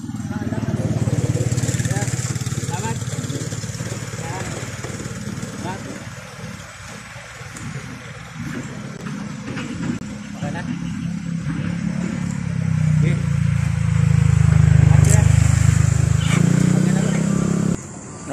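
A motorcycle engine running close by, growing louder about twelve seconds in and falling away about four seconds later, with faint voices over it.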